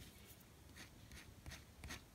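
Faint, brief scraping strokes, about five in a row: a nail-art scraper or stamper being drawn across a metal stamping plate to take up the pink polish.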